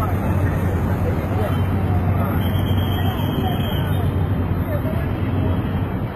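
Indistinct voices of several people talking over a steady low engine hum and road traffic noise.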